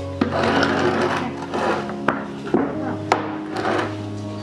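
Wooden tofu-press mold being lifted, scraped and knocked on the table as pressed tofu is turned out onto a tray: a rubbing, scraping sound in the first half and several sharp wooden knocks. Background music plays under it.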